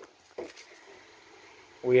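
Quiet workshop room tone with two short, faint sounds about half a second apart, then a man's voice starts near the end.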